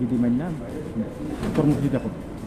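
A man speaking Bengali in short phrases, with a pause in the middle.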